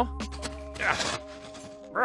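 Background music with steady held notes; about a second in, a metal shovel scrapes into loose dirt.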